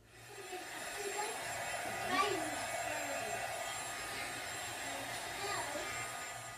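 Handheld heat gun blowing, drying freshly applied flexible modeling paste on paper: a steady rush of hot air with a thin fan whine. It spins up over the first second and dies away near the end.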